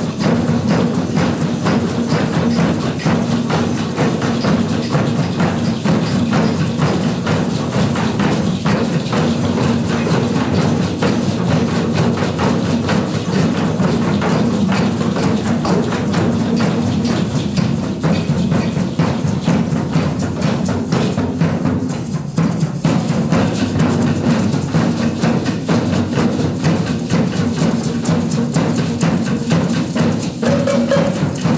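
Drum circle: a group playing djembes, frame drums and a large double-headed drum together in a steady, dense rhythm of many overlapping hand strikes, with sharp, clicky hits on top.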